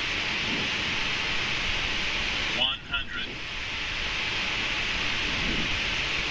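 Steady rushing air noise on a Boeing 777 flight deck on short final. About two and a half seconds in, the automated radio-altimeter voice calls out "one hundred" and then "fifty", marking the height above the runway just before touchdown.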